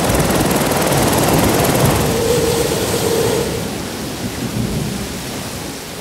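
Storm sound effect: heavy rain with thunder, fading gradually toward the end.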